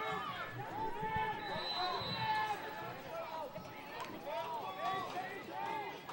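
Several players' and bench voices calling and shouting across an open lacrosse field, overlapping at a distance.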